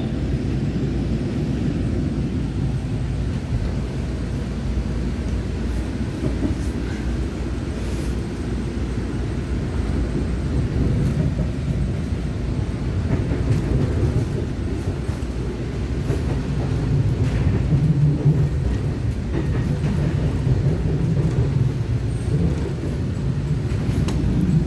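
Interior running noise of a Taiwan Railways EMU900 electric multiple unit in motion: a steady low rumble of wheels on rail that grows somewhat louder in the last third.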